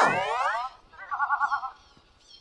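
Cartoon sound effects: a pitched sound glides downward through the first half-second, then a short wobbling boing sounds about a second in.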